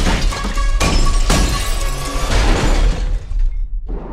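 A glass display case shattering, with sharp crashes in the first second and a half, over loud dramatic music with a deep bass. The sound drops away shortly before the end.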